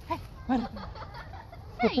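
A person's short voice sounds and a brief laugh near the end, over a low background.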